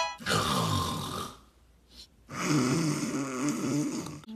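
A person snoring loudly: two long, rough snores with a pause of about a second between them.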